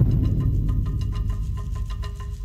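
Electric garage door opener running as the sectional door rolls up: a low motor rumble with a rapid, regular clatter, starting abruptly, and a steady whine joining about halfway through.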